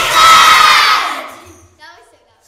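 A class of children shouting and cheering together, loud at first and fading out after about a second.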